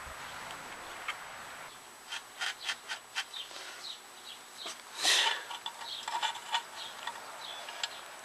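Hands handling small parts while fitting a lawnmower's replacement fuel tank and its mounting spacer on a bolt: a run of light clicks and taps, with a louder scraping rustle about five seconds in.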